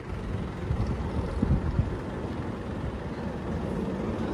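Ford Everest's 2.5-litre diesel engine idling with a low, steady rumble.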